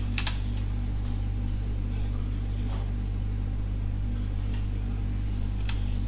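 A handful of scattered sharp clicks from a computer keyboard and mouse, the loudest just after the start, over a steady low hum.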